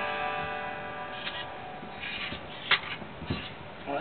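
Gibson Les Paul guitar strings strummed once and left to ring, fading out, while the G-Force robotic tuners bring it to standard pitch. A few sharp clicks follow near the end.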